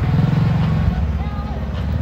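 An engine running steadily at low speed, a low even hum.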